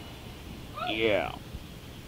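A person's voice: one short, high vocal call with a sliding pitch about a second in, over low room noise.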